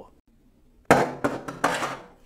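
A WD My Passport Go portable SSD in its rubber bumper being drop-tested: a sudden impact about a second in, then a couple more clattering knocks as it bounces and settles.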